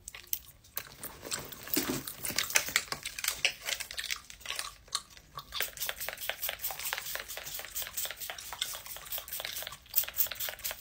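Close-up chewing with many quick, irregular clicks and crunches.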